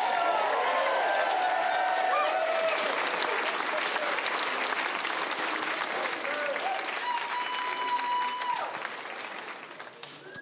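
A theatre audience applauding and cheering after a punchline, with scattered whoops early on. Someone in the crowd holds one long steady high note about seven seconds in. The applause fades toward the end.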